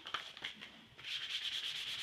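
Hand sanding of cured leather filler putty with 500-grit wet-or-dry sandpaper, smoothing off its rough spots. The sanding begins about a second in as quick, even back-and-forth rasping strokes.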